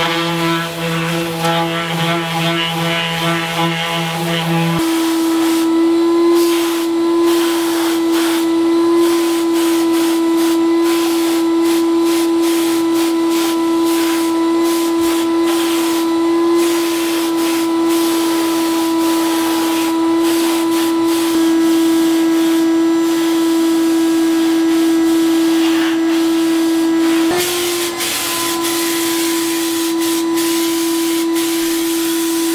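Titan Capspray HVLP turbine paint sprayer running with a steady whine and a hiss of air and paint from the spray gun. For about the first five seconds a Festool electric sander also runs over it, then stops.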